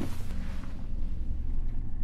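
A low, steady rumble with a faint hum and no voices: background ambience from the TV episode's soundtrack.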